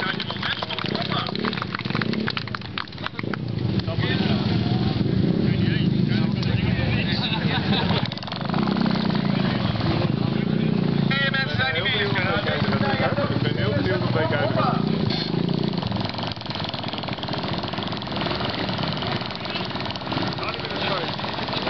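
Small moped engines running, their sound swelling and easing in stretches of a few seconds, with the chatter of a crowd of onlookers.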